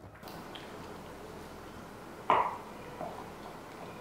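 A wooden spoon stirring tender boiled cow foot in its stock in a pot, over a steady low hiss, with one sharp knock about two seconds in.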